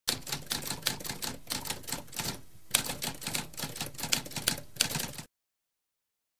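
Typewriter typing: a fast, uneven run of key strikes with a brief pause a little over two seconds in, stopping abruptly about five seconds in.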